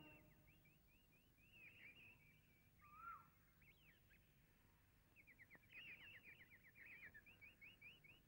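Faint birdsong: scattered short chirps and whistled notes, then a quick run of repeated chirps in the second half.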